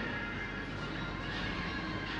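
Coffee shop ambience: background music over a steady bed of café room noise, with some held higher tones.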